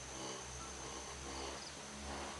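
Insects in the forest canopy, probably cicadas or crickets, making a steady high-pitched drone, with a few short chirps, heard from inside a cable-car gondola over a low steady hum.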